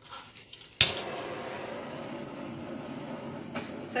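Small handheld gas torch clicking alight about a second in, then a steady hissing flame.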